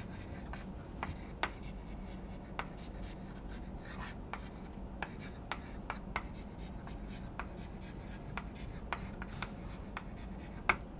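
Chalk writing on a chalkboard: a string of faint, irregular taps and short scrapes as letters are written, over a low steady background hum.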